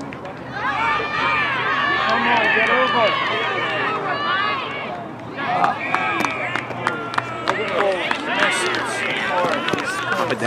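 Several voices shouting over one another as rugby players contest a ruck. About halfway through comes a short, steady referee's whistle blast, followed by more scattered shouts.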